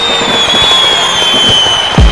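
Fireworks: a long high whistle that slides slowly down in pitch over a dense crackle of bursting shells.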